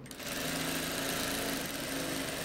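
Industrial straight-stitch sewing machine running at a steady speed, stitching a seam down one side of a zipper; it starts just after the beginning.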